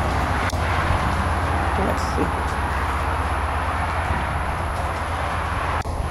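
Steady outdoor background noise: a constant low rumble under an even hiss, with a brief dip near the end.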